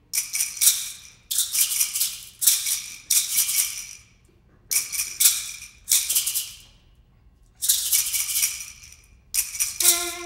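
Music: a shaken rattle played in groups of quick shakes about a second long, with short pauses between them. A held pitched note comes in at the very end.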